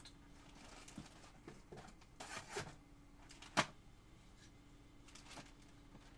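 Faint handling noises as objects are moved about: a brief rustle, then a single sharp click about three and a half seconds in, over a low steady hum.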